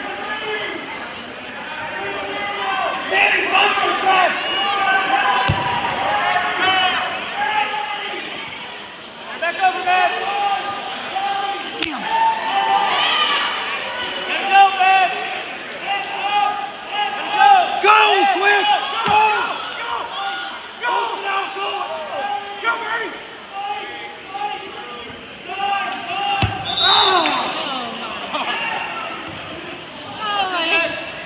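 Spectators and coaches shouting and calling out over one another in a gym during a wrestling match, with four dull thumps spread through it.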